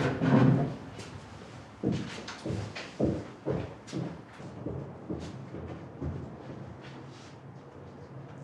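A loud thump, then a run of short knocks, about two a second, that fade away over the next few seconds.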